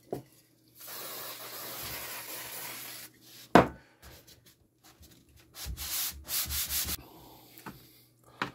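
A hand rubbing over a thin wooden panel, spreading glue with the fingers: a steady rub for about two seconds, a single sharp knock about halfway, then a quick run of short rubbing strokes.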